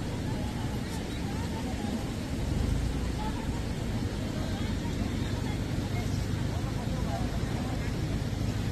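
Steady low rushing rumble of a river in flood, with scattered voices of people standing nearby.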